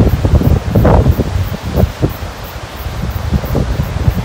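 Strong gusty wind buffeting the microphone in a low rumble, peaking about a second in, with long grass rustling in the wind.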